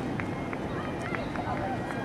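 Faint distant voices of people along the street over steady outdoor background noise.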